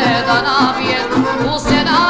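A woman singing a Serbian folk song, her voice wavering with vibrato over a full band accompaniment.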